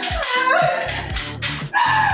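Upbeat background music with a steady drum beat. Over it come a woman's loud, high wailing cries of mock labour pain; the last one falls in pitch near the end.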